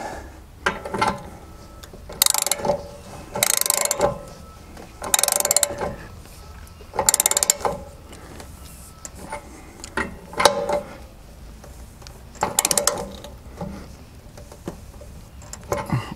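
Ratchet socket wrench clicking in short runs, about half a dozen a couple of seconds apart, as a new anode rod is tightened into an RV water heater tank.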